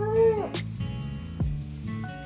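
A baby gives one short squeal that rises and then falls, in the first half second, over background music with a steady beat.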